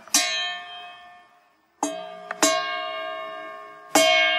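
Music on a plucked string instrument, played in slow separate strokes, each left to ring and fade. One stroke comes at the start, then a near-silent pause, two more around the two-second mark, and another at the very end.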